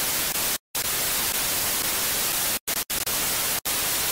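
Television static sound effect: a steady hiss of white noise that cuts out briefly a few times.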